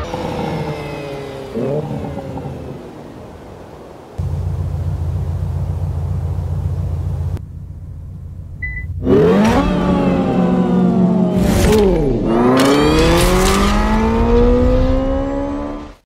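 Hyundai Ioniq 5 N electric car's synthesized racing-engine sound, not a real engine. It falls in pitch at the start, and after a short beep it climbs steeply in pitch, drops sharply as if through a gear change about three-quarters of the way in, then climbs again.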